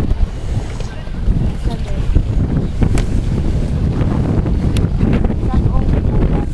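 Wind buffeting the camera microphone: a loud, steady low rumble, with a few faint knocks.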